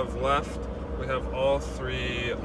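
A man talking inside a truck cab, over the steady low hum of the truck's engine.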